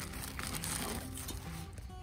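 Background music, with light crinkling from a plastic bag of mini marshmallows being handled over aluminium foil.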